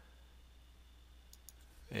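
Near silence with a steady low hum, broken by two or three faint clicks about a second and a half in.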